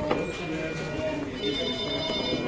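Indistinct voices in the room, with a couple of sharp clicks at the start. About one and a half seconds in, a ringing electronic tone starts, made of several steady high pitches.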